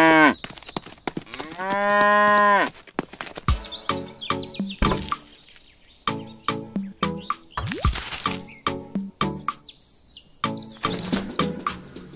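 A cow mooing: the end of one moo, then a second long, even-pitched moo about a second in. Background music with a regular beat follows for the rest of the time.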